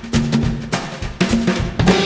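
Swing music in a passage led by the drum kit: sharp snare and bass-drum strikes about every half second over low bass notes.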